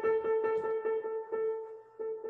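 A piano piece in A-flat major plays back: one held upper note sounds over a quick repeated accompaniment in the lower notes, about four or five notes a second.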